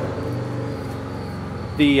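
A steady low hum from a running motor, even in pitch, like an engine at idle. Speech comes in near the end.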